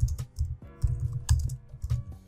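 Computer keyboard being typed on in quick irregular runs of keystrokes, each with a click and a dull thud, over faint background music.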